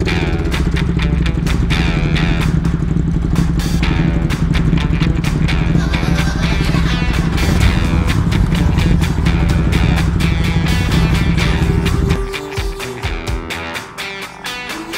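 Motorcycle engine running steadily under background music with a regular beat. The engine sound drops out about twelve seconds in, leaving only the music.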